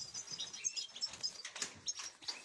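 European goldfinches chirping in an aviary: many short, high twittering calls overlapping one another.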